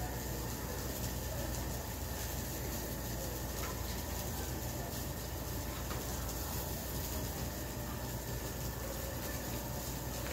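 Steady low rumble and hiss of background noise with faint steady high tones, and no distinct event.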